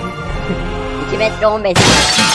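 Background music, then a short wavering vocal line, cut off near the end by a sudden loud crash-like burst of noise lasting about half a second, a sound effect laid over the moment the big man grabs the other.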